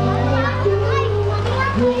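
Children's voices calling and shouting as they play, over background music with steady sustained bass notes.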